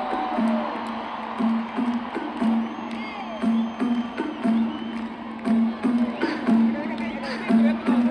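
Live concert music played over an arena sound system: a low note pulses about twice a second, with crowd cheering and shouting over it.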